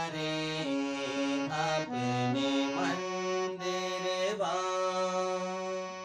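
Harmonium playing a slow alaap phrase in raag Bhimpalasi, holding each note and stepping between notes every half-second to second over a steady low note, with a male voice singing along on the same notes in places.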